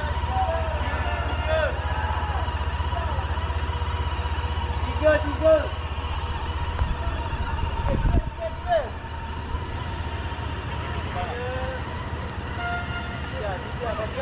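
Street ambience: a steady low engine rumble, as of a vehicle idling, under scattered distant voices. A single low thump comes about eight seconds in.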